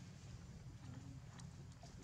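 Faint outdoor background with a steady low rumble and a few soft, scattered ticks.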